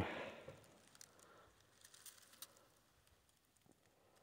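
Near silence, with the tail of a spoken 'um' right at the start and a few faint scattered clicks and rustles.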